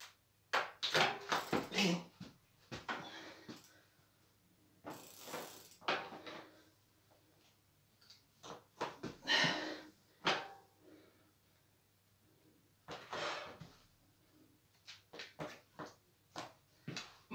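Irregular clicks, knocks and short rustles from a mountain bike and its rider balancing in place on a carpeted floor, with a few longer hissing sounds in between.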